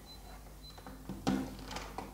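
A few short clicks and knocks of a laptop and its charger plug being handled, the loudest about a second in.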